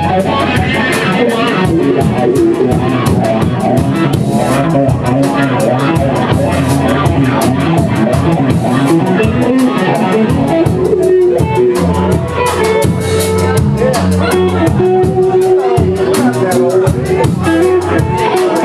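Live blues-rock trio playing an instrumental passage: electric guitar over electric bass and drum kit, with the guitar holding long sustained notes in the second half.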